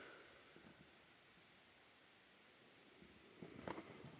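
Near silence: faint background hiss, with a few faint ticks near the end.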